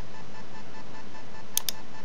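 A computer mouse button clicks twice in quick succession near the end, over a steady background hiss.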